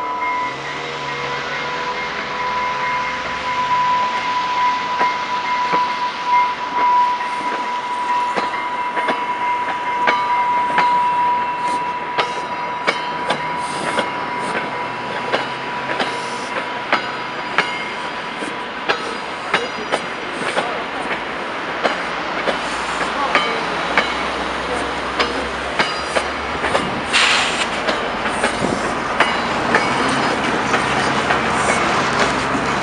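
Bi-level commuter train cars rolling past at close range, their wheels clicking over rail joints in a rapid, uneven run that thickens after the first several seconds. A steady high tone sounds at the start and fades out.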